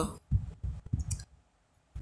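A few short soft knocks and one sharp click, then a moment of near silence.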